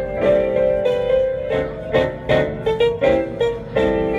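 Solo piano playing: chords with a melody of sustained notes struck every quarter to half second, moving up and down in pitch.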